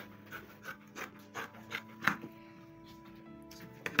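Fabric scissors cutting through cloth in a run of short snips, with a knock on the wooden table near the end as the scissors are put down.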